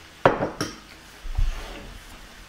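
A metal spoon clatters twice against a bowl, then the bowl is set down on the table with a dull thump.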